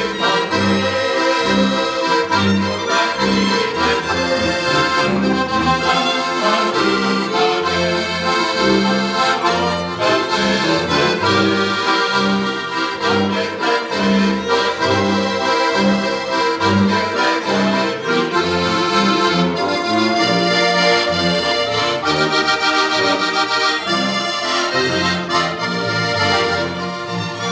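A Slovenian folk-pop band of button accordion, piano accordion, violin and bowed double bass playing a lively tune, led by the accordions over a steady bass pulse of about two notes a second.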